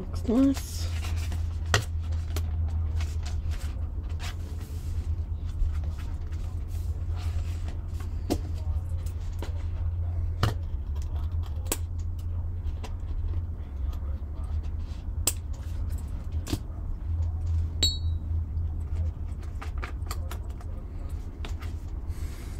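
Paper and small craft tools being handled on a work table: scattered light taps and clicks as journal pages are turned and things are picked up and set down, with a small metallic clink near the end, over a steady low hum.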